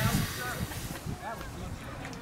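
Indistinct distant voices of people talking, with wind rumbling on the microphone, strongest at the start.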